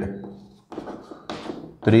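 Chalk on a blackboard while writing: a sharp tap of the chalk against the board a little under a second in, then a short scratchy stroke.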